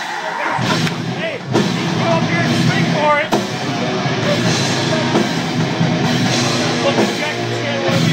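Deathcore band playing live: distorted guitars, bass and pounding drums, with harsh vocals over them.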